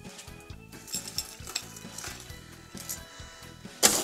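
A metal scoop digging and scraping into crushed ice, in short crunching strokes, with quiet background music.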